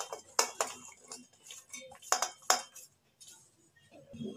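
Metal spoon clinking and scraping against steel vessels while cooked ridge gourd pieces are scooped from a pan into a steel bowl: a string of short clinks, the loudest near the start and about two seconds in.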